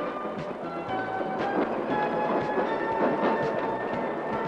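Freight train rolling along the track, its wheels clicking over the rail joints, under background music of held notes.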